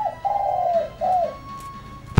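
A dove cooing: a short run of low, hollow notes, the middle one the longest.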